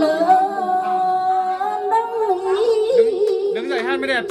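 Women's voices singing a then folk song of Lạng Sơn unaccompanied into microphones, drawing out long, slightly wavering held notes.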